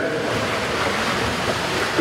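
Steady rushing noise, even from low to high pitch, with no voice in it.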